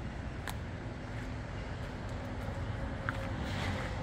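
Steady low outdoor background rumble with a faint hum running under it and a couple of small clicks.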